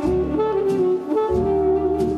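Instrumental break of a small old-time jazz band: a reed lead holding sustained melody notes over a bass line and light drums.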